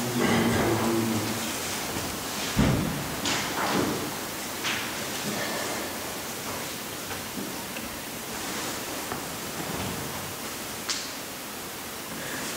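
Steady hiss of room and microphone noise, with a soft thump about two and a half seconds in and a few light taps and rustles as a tablet is handled near the microphone.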